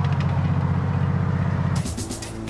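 A tank engine runs with a steady low drone that cuts off suddenly near the end. Quieter held tones and a few sharp clanks follow.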